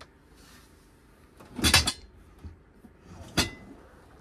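Kitchen cabinet being handled as a drawer loaded with cast iron pots is pulled out. There is a loud knock about a second and a half in and a sharper click nearly two seconds later.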